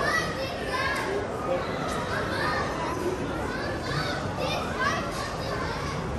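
Children's voices calling out and chattering at play, high-pitched and frequent, over a steady background of crowd chatter.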